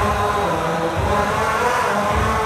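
A sustained musical tone, a held chord that sinks slightly in pitch, serving as a jingle that bridges from the interview into the sponsor spot.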